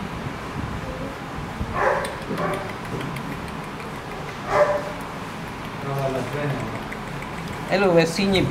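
A dog barking a few short times, about two seconds in and again near the middle, over faint voices.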